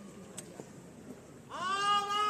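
Faint background murmur, then about one and a half seconds in a voice starts a loud, drawn-out shout held on one steady pitch, typical of a drill command called to a formation.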